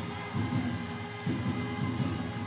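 Baseball stadium crowd noise with rhythmic cheering music from the stands, repeating low pulses about once a second under a steady wash of crowd sound.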